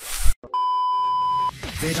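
A short burst of static-like noise, a brief silence, then a steady electronic bleep tone held for about a second and cut off abruptly, breaking off the spoken sentence as a glitch sound effect. An intro jingle with music and a voice starts near the end.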